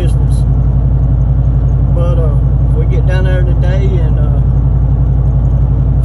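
Steady low drone of a pickup truck's engine and tyres heard from inside the cabin while driving, with no change in level. A voice speaks briefly over it near the middle.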